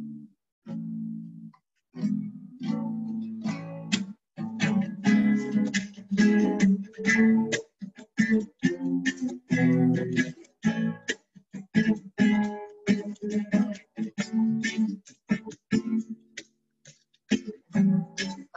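Classical nylon-string acoustic guitar strumming chords, playing the introduction to a worship song. The sound drops out briefly again and again, as audio does over a video call.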